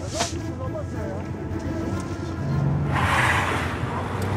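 Steady low hum of a moving car, heard from inside the cabin. About three seconds in comes a brief rush of tyre and road noise as a car drives past.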